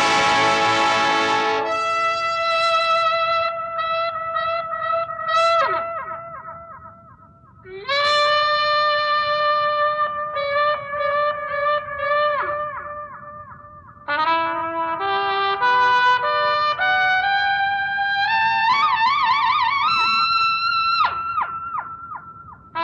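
Instrumental passage of a 1970s Hindi film song, led by a trumpet playing long held notes in three phrases, each ending in a downward slide; the last phrase climbs step by step to a wavering high note.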